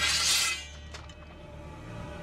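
Swords drawn from their scabbards: a bright metallic scrape and ring lasting about half a second, then a faint clink, over a low film-score drone.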